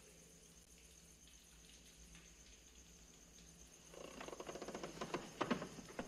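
Water splashing and dripping as a hand scoops it over a head, a quick patter of small splashes starting about four seconds in, over a faint steady film-soundtrack hum.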